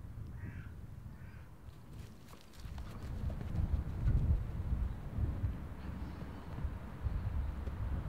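Open-field ambience: a few short, faint bird calls in the first second or so, then a fluctuating low rumble of wind on the microphone from about three seconds in.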